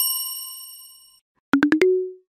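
Bell-like chime sound effect: one bright ding that rings out and fades over about a second. Near the end, four quick short blips run into a held lower note.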